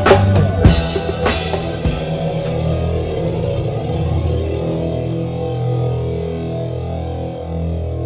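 Live rock band: a run of drum hits, djembe among them, stops about two seconds in. Sustained chords and bass then ring on.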